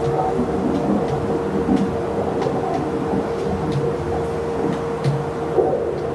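Frosted quartz crystal singing bowl holding one steady ringing tone, over a dense low rumbling wash from other sound-bath instruments, with faint scattered ticks.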